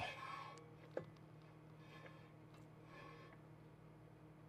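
Very faint scraping as an aftermarket 18-inch wheel is turned by hand and brushes against the front suspension knuckle, a sign that the wheel does not clear the knuckle; one sharp click comes about a second in.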